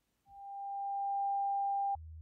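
A single pure electronic tone, a steady mid-high beep. It swells in over about a second, holds level and cuts off abruptly at the very end.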